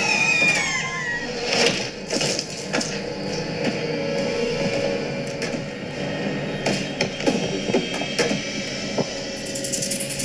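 Horror-film soundtrack: a tense music score with sustained low tones over a run of sharp cracks and knocks scattered through it, with a wavering high sound sliding downward in the first second.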